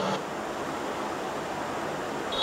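A steady, even hiss with no distinct events.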